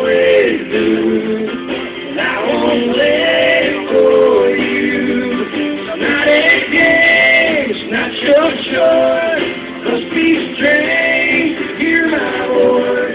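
Live acoustic country song: a man singing, with strummed acoustic guitar.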